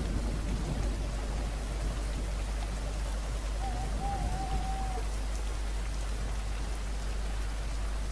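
Steady background hiss with a low hum underneath, the noise floor of the voice-over recording. A faint wavering tone comes in for about a second and a half near the middle.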